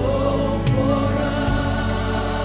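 A gospel worship song: a group of voices singing a sustained melody over a band, with a few drum hits.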